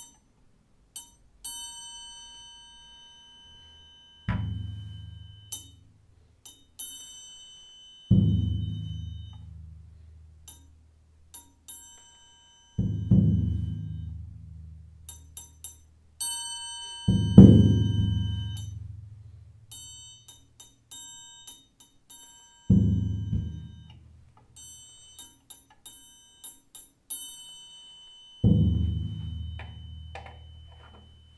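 A large drum struck slowly with soft felt mallets: six deep, booming strokes about every four to five seconds, each ringing out and fading, the loudest a little past halfway. Between the strokes come light, high-pitched ringing taps and clicks.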